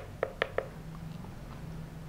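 Three light, quick clicks within the first half second from pressing the arrow button on an EarthPulse V6 PEMF controller's keypad to step the frequency setting up. After that only a faint steady low hum is heard.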